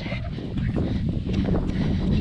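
Wind buffeting the microphone of a handheld camera during a run, a steady low rumble, with faint regular footfalls on wet asphalt.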